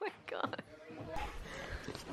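Faint voices in the background, low and indistinct, with some room noise.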